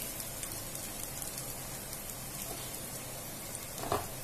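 Chopped green beans, carrot, garlic and ginger sizzling in hot oil in a non-stick frying pan: a steady, light crackling hiss.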